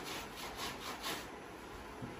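Hand-scrubbing of a wet, soapy garment against a tiled floor: a quick run of rasping rubbing strokes in about the first second, then quieter.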